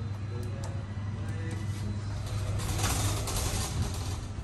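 Cargo lift car humming steadily, with a light click as a floor button is pressed near the start, then the lift doors sliding shut with a louder rushing rumble for about a second and a half, from about halfway through.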